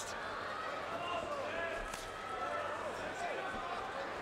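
Crowd noise: a steady murmur of many voices with scattered individual shouts.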